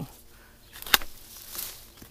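Long-handled loppers cutting through a small apple branch with one sharp snap about a second in, followed by a faint rustle of leaves.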